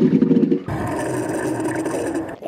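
Electric cargo trike riding fast, with wind rushing over the microphone. After a cut, the trike brakes hard to a stop on asphalt, its tyres and brakes rumbling with a thin steady whine.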